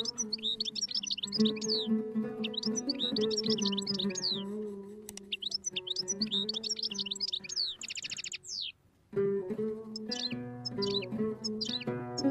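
Oud taqasim, a solo improvisation with plucked melodic phrases, overlaid with goldfinch song: repeated short falling chirps, with a fast buzzing trill near 8 s. The sound cuts out briefly just before 9 s and then resumes.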